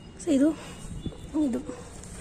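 Speech only: a woman says two short words, with low background noise between them.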